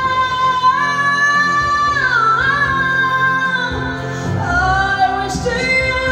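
A woman singing into a microphone over a karaoke backing track, holding long notes with no clear words. The pitch dips a little past two seconds in, falls to a lower note around the middle, and a new note starts near the end.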